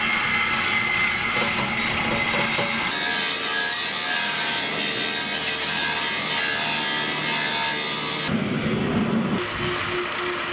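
Hand-held power tool grinding on steel, a steady whine over dense rasping noise. The whine's pitch and the sound's character shift about three seconds in and again near the end.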